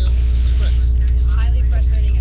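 Faint, muffled speech, as from a played-back news report, under a loud steady low hum with evenly spaced overtones.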